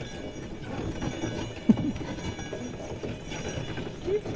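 Hooves of two horses clip-clopping on a packed snow track as they pull a sleigh, with the rumble and rattle of the moving sleigh. There is one brief, louder pitched sound a little before halfway.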